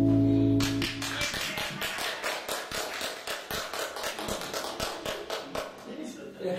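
A live band's closing chord on ukulele, electric bass and electric guitar rings out and stops about a second in. Applause follows, the claps heard singly.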